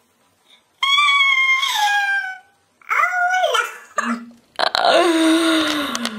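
A woman's high-pitched squeals of shock and amusement: two long cries that slide down in pitch, then a louder, rougher shriek near the end.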